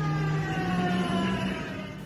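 Steel-mill machinery at a tipping ladle: a steady low hum under a whine that falls slowly in pitch and fades near the end.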